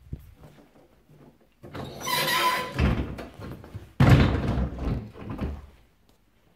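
Built-in cupboard doors being handled: a scraping rush about two seconds in, then a loud thump about four seconds in as a door is pushed shut.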